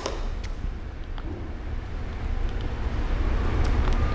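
Steady low background rumble with a few faint clicks from tape and a paper cutout being handled.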